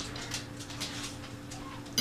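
A dog panting quickly, about three or four soft breaths a second, over a steady low hum.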